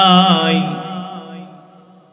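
A man's voice holding a long chanted note at the end of a phrase, with a wavering pitch. It fades away over about a second and a half, trailing off into the hall's echo through the loudspeakers.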